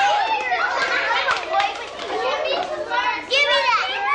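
Kindergarten children talking and calling out at once, many high voices overlapping in a steady classroom chatter.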